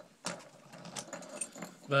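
Light metallic clicks and jingling of a small steel animal trap being handled, several scattered ticks over a couple of seconds.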